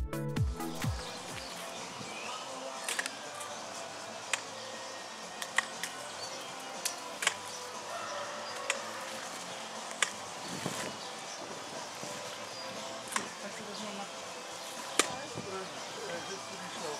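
Background music fades out in the first second. After it comes a steady outdoor background with scattered sharp clicks and snaps, about one every second or two, from hand work pulling apart an overgrown wire-mesh fence and hedge.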